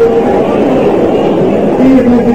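Many voices of a church congregation sounding at once, a loud dense wash with no single clear voice or melody standing out.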